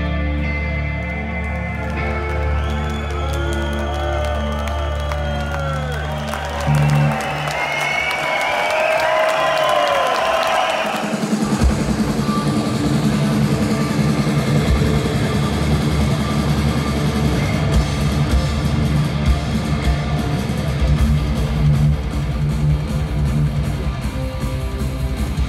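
Heavy metal band playing live: an electric guitar lead with bent, gliding notes over held low chords, then about eleven seconds in the drums and full band come back in at a driving pace.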